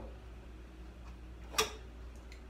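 One sharp click about one and a half seconds in from a French press's metal plunger and lid being handled as they come out of the glass carafe, over a faint steady low hum.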